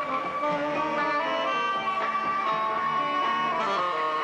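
Live band music, an instrumental passage of held melodic notes over the accompaniment.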